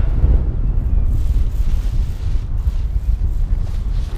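Airflow buffeting the microphone of a harness-mounted camera on a paraglider in its final glide to land: a loud, steady low rumble that rises and falls.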